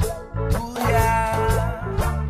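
Instrumental opening of a family song: guitar-led band music with a steady beat and a strong bass line.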